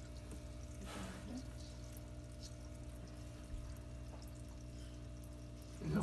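Faint small water sounds, light drips and stirrings, as box turtles move about in a shallow tub of water, over a steady low hum.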